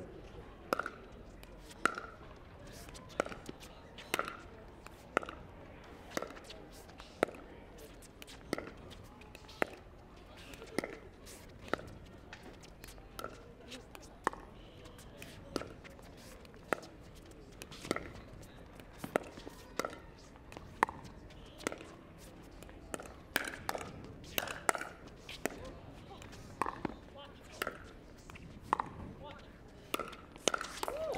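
Pickleball paddles striking a hard plastic ball in a rally, a sharp pock about once a second, the hits coming closer together near the end.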